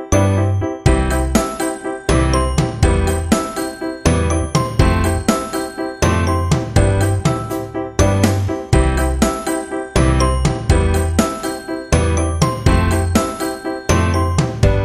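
Background music: a bright, chiming melody of quick plucked notes over a bass note that repeats about once a second.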